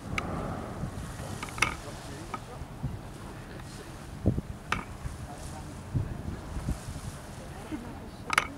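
Wind buffeting an outdoor microphone by open water, a steady low rumble, with several sharp clicks and knocks scattered through it.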